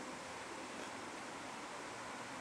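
Faint, steady background hiss of outdoor ambience, with no distinct sound events.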